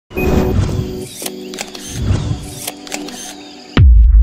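Intro music with sustained tones and a series of sharp clicks, ending in a loud, deep boom near the end.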